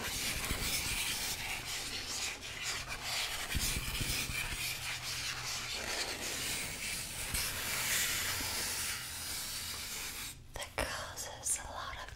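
Close-miked rustling and rubbing from hands working a small white object right at the microphone, a dense crackly texture that stops about ten seconds in, leaving a few faint clicks.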